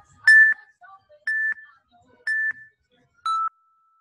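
Interval workout timer beeping a countdown: four short beeps about a second apart, the first three at one pitch and the last one lower. The beeps mark the end of the rest period and the start of the next work round.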